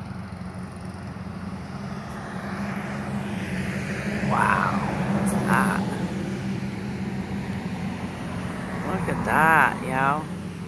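A steady low engine rumble that swells about halfway through and then eases off, with a brief vocal sound near the end.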